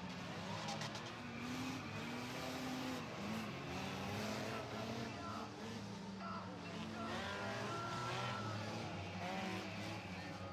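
Many demolition-derby car engines running and revving together, their pitches rising and falling as the cars push and ram one another, heard from the stands.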